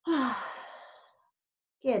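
A woman's long, audible sighing exhale: a breathy breath out with a brief falling voiced tone, loud at the start and fading away over about a second.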